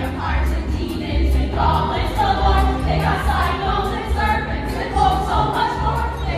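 Children's ensemble singing a musical-theatre number in chorus over a recorded backing track with a steady bass-heavy beat.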